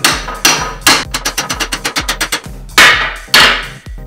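Claw hammer tapping a steel smooth rod down into its hole in a 3D printer's Z-axis mount. Three sharp strikes are followed by a run of quick, lighter taps and then two more hard blows near the end, over background electronic music.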